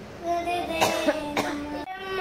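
Young girls' voices chanting a prayer in a held, sing-song tone, broken by two short sharp noises, one just before the middle and one about half a second later. The sound drops out briefly just before the end.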